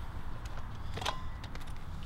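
Handling noise of a flash head being adjusted on a camera flash bracket: a few faint clicks and one sharper click about a second in, over a low steady background rumble.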